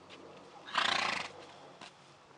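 A horse whinnying once, briefly, about a second in.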